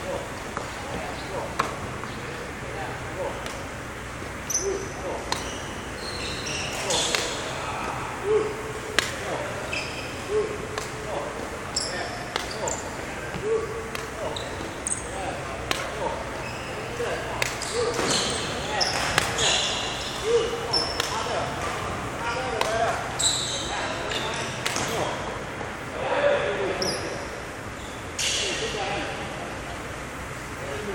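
Badminton rally: racket strings striking a shuttlecock about once a second, back and forth, with sports shoes squeaking and stepping on a wooden court.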